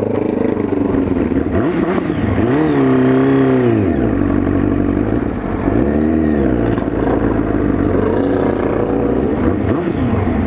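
Motorcycle engine running at low road speed, its revs rising and falling twice: once about two and a half seconds in, and again about six seconds in.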